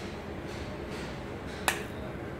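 A single sharp snap from a capacitor-discharge welding pulse firing at the electrode of a micro welding machine, near the end.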